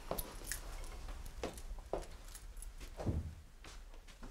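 Footsteps of several people walking in through a doorway, with keys jingling; a heavier step lands about three seconds in.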